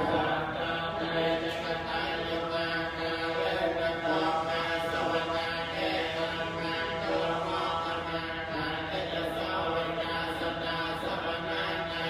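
Theravada Buddhist chanting led by a monk into a microphone: a continuous, drawn-out recitation on long held notes.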